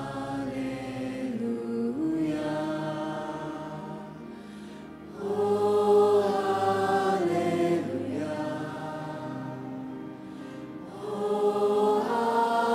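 A woman singing a slow worship song into a microphone with accompaniment, in long held notes, growing louder about five seconds in.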